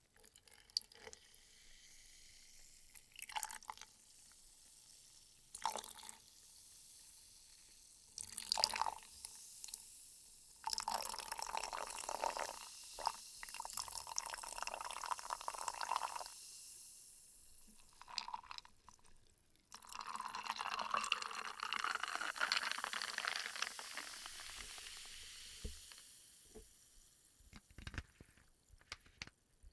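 Sparkling water poured from a bottle into a glass mug of ice: a few short splashes, then two longer pours of several seconds each, the last trailing off.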